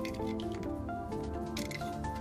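Background instrumental music, a melody of held notes moving from pitch to pitch, with a few short sharp ticks over it.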